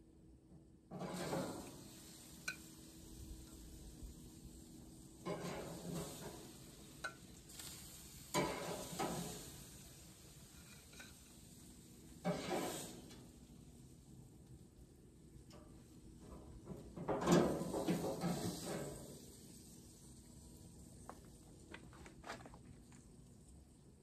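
Metal tongs lifting grilled chicken breasts off a gas grill's grate and setting them on a plate: about five short bursts of scraping and clatter with quieter gaps between.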